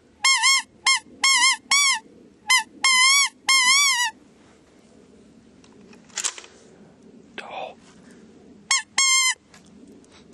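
A series of loud, goose-like honking calls with a wavering pitch: about eight in quick succession over the first four seconds, then two more about nine seconds in, with faint rustling between.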